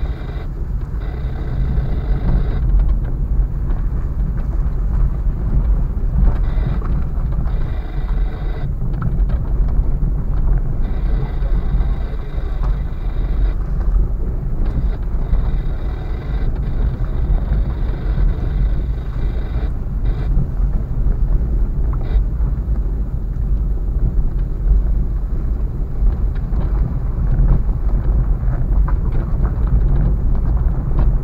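Inside a car's cabin driving slowly over a rough, potholed dirt and gravel lane: a steady low rumble of engine and tyres, with a thin whine that comes and goes above it.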